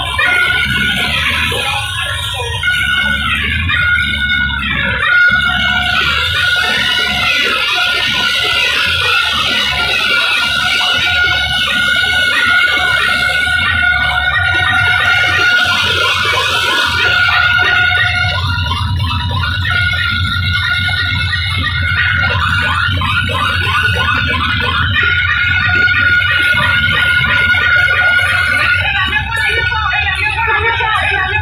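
Loud DJ dance music played through a large outdoor DJ sound system, with heavy bass and a high held synth tone through much of it.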